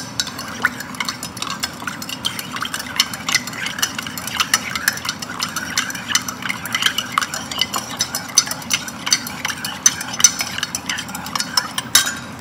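Metal spoon stirring creamer into coffee in a ceramic mug, clinking and ringing against the mug's sides several times a second, without a break.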